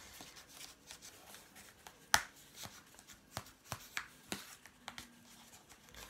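Crochet hook being pushed and worked through the punched holes of a paper plate to widen them: a string of irregular sharp clicks and scratchy paper sounds, the loudest about two seconds in.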